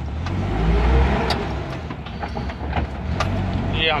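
Engine and road noise heard inside the cabin of a moving ambulance, the engine's low rumble swelling about a second in, with a few light knocks.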